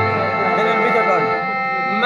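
Live devotional music over a sound system: a sustained harmonium-style chord with a wavering melody line over it, and a deep drum beat that fades out about half a second in.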